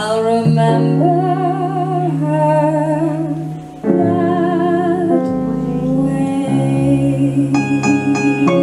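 A woman singing long held notes with vibrato, accompanied by upright double bass and keyboard. About four seconds in, after a brief drop, she takes up another held note. Near the end the keyboard plays a run of crisp single notes.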